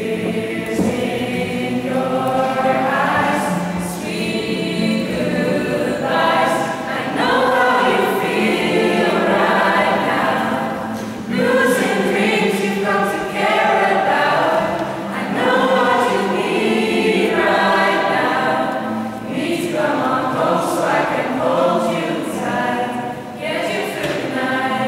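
A small mixed group of young women and men singing a song together, phrase after phrase with short breaks between lines.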